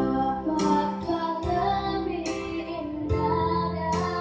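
A song playing: a high singing voice over plucked-string accompaniment, with notes struck every second or so.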